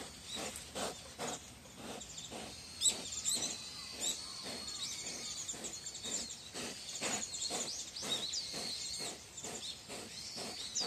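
A wild boar caught in a cage trap, breathing in short grunts about twice a second, with small birds chirping.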